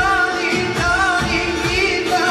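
Balkan Roma pop song: a singer's wavering, ornamented melody over a steady beat.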